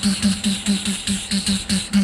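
A beatboxer performing into a microphone: a fast, even rhythm of short hummed bass notes, each with a hissing hi-hat-like stroke, about six or seven a second.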